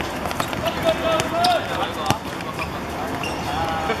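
A football being kicked and dribbled on an outdoor hard court, with one sharp kick about two seconds in, amid players' shouts and calls.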